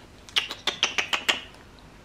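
A quick run of about eight small, sharp clicks over about a second, made by fingers and fingernails picking at a small white plastic charger.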